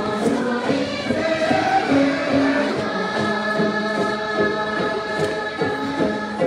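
A group of voices singing a Dolpo gorshey circle-dance song together, in long held notes.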